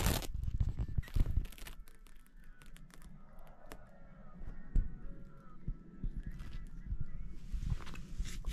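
Faint rustling and crackling handling noise with scattered sharp clicks.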